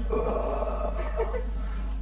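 A man's voice holding one steady, level sound for about a second and a half, like a drawn-out hesitation hum between words.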